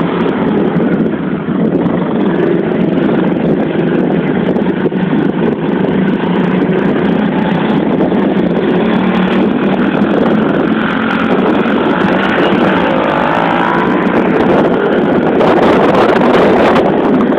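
Small pit bike engine running close by as the bike is ridden around on grass, with the pitch rising and falling a little in the later seconds.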